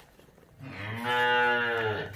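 Crossbred dairy cow mooing: one long call starting about half a second in and lasting over a second, its pitch arching slightly up and back down.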